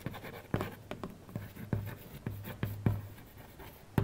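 Chalk on a chalkboard while a word is written: a quick, irregular run of light taps and short scratches as the strokes are made.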